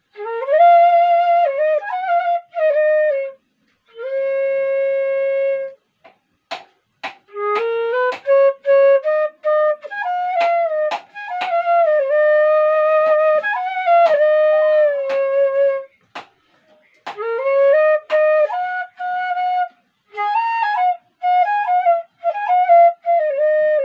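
Bamboo bansuri (side-blown flute) played solo: a melody in short phrases broken by breath pauses, with a few long held notes around the middle.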